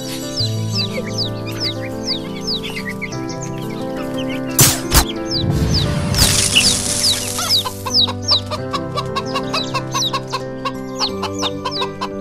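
Cartoon chicks peeping in quick, short chirps and chickens clucking over light background music. About halfway through comes a sharp knock, then a rising whoosh.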